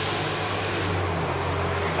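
A steady low hum under an even rushing noise, holding at a constant level.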